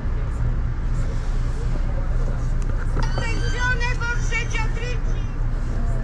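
Steady low hum inside a passenger rail car standing at a station. A voice speaks briefly from about three seconds in.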